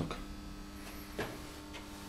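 Steady low electrical hum made of several even tones, with a faint click about a second in.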